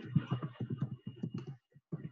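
Typing on a computer keyboard: a quick, uneven run of key clicks as a word is typed.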